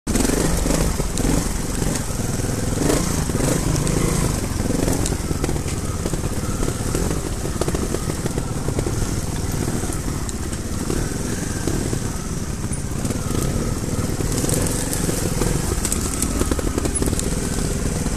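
Trials motorcycle engines running at low speed over rocks, the revs rising and falling in short throttle blips.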